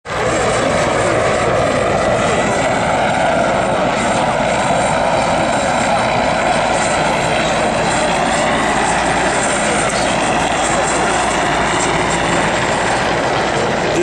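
Mi-8-type military helicopter flying low overhead: steady, loud turbine and rotor noise with no breaks.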